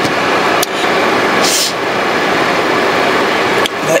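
Car air-conditioning blower running steadily inside the cabin, a loud, even rush of air, with a brief higher hiss about a second and a half in.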